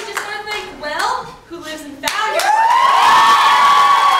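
A small group clapping and cheering. Scattered claps and voices come first, then about halfway through a long, held whoop rises over the clapping.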